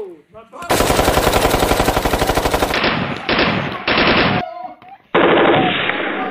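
Machine-gun sound effect: rapid automatic fire in a long burst of about two seconds starting just under a second in, two shorter bursts after it, and another burst from about five seconds in.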